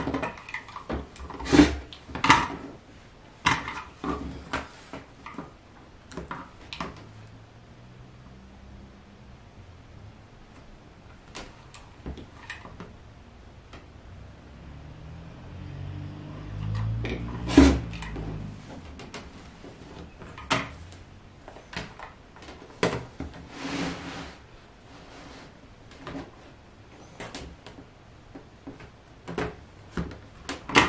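Quilting tools handled on a cutting mat: scattered sharp clicks and knocks as an acrylic ruler is set down and shifted over the fabric. Just past the middle a low rolling rumble builds and ends in a sharp knock as a rotary cutter is run through the fabric along the ruler.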